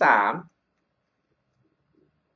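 A man says one short word, then near silence with only a few faint, soft clicks.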